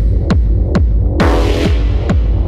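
Techno track in a DJ mix: a steady four-on-the-floor kick drum at a bit over two beats a second over deep bass, with a brief wash of cymbal-like noise about halfway through.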